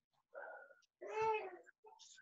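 Two short vocal sounds, the second a louder, high-pitched call about a second in that rises and falls in pitch over about half a second.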